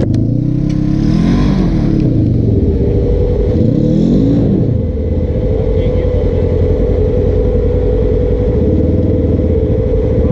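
Polaris RZR side-by-side engine revving up and down several times in the first half as it works for momentum on a slick, rutted climb, bottoming out, then held at a steady pitch.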